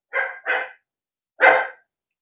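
A dog barking three times: two quick barks close together, then a single bark about a second later.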